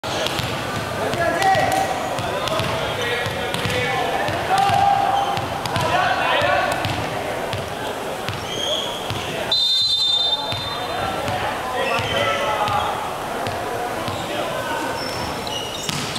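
Voices of players and spectators echoing in a sports hall, with a volleyball bounced on the wooden court floor before a serve, heard as scattered sharp knocks.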